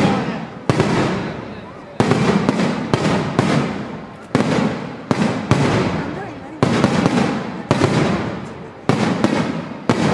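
Aerial fireworks shells bursting in quick succession, about one bang a second, some closer together. Each bang is followed by a rumbling tail that dies away before the next.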